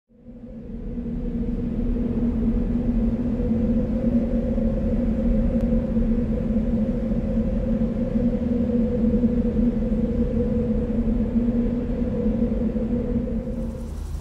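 A steady low hum with a rumble beneath it, fading in over the first second and holding one unchanging pitch throughout.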